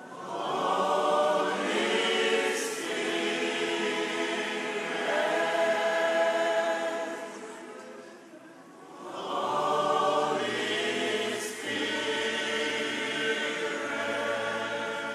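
Many voices singing together, a slow worship song sung as a choir. It comes in two long held phrases, fading briefly about eight seconds in before swelling again.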